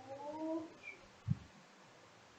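A short rising vocal call lasting under a second near the start, followed by a dull thump just over a second in.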